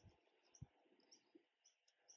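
Near silence, with faint, scattered high chirps in the background.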